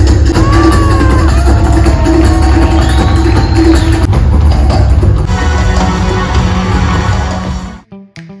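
Live band music with a drum kit, loud and played in a theatre, heard from the audience. The sound changes about five seconds in and fades out near the end.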